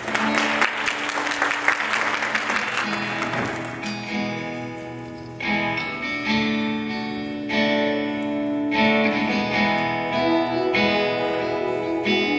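Congregation clapping for the first few seconds, fading as an acoustic guitar begins an introduction, its chords struck every second or two and left ringing.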